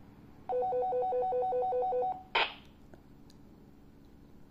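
Walkie-talkie giving a rapid two-tone electronic trill for about a second and a half, then a short burst of static. This is the PMR radio's transmission of channel 1 being copied into the XF-888S during frequency-copy programming.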